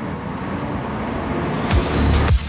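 Wheeled armoured personnel carrier running and driving, a steady noisy engine rumble. Near the end, heavy bass beats of music come in.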